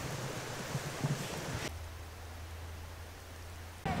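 Faint outdoor background hiss with a small tick about a second in; partway through, the sound changes abruptly to a steady low hum under quieter hiss.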